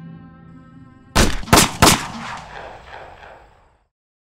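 A held music chord fades out, and a little over a second in come three gunshots in quick succession, each about a third of a second after the last, with an echoing tail that dies away.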